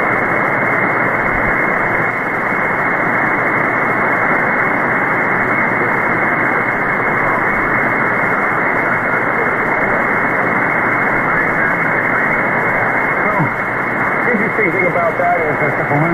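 Steady static hiss from an SDRplay RSPduo receiver tuned to 1.930 MHz on the 160-meter ham band, heard between transmissions. The hiss is cut off sharply above the voice range, and a faint voice starts to come up through the noise near the end.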